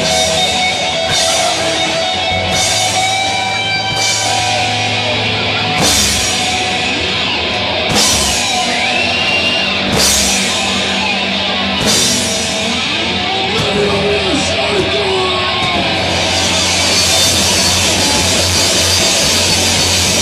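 Live punk rock band playing loud: distorted electric guitar and drum kit, with a cymbal crash about every two seconds, turning to steady cymbal wash in the last few seconds.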